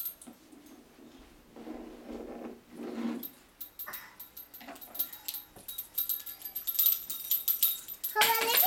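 A small dog making a few short, soft vocal sounds in a small room, followed by scattered light clicks and rattles.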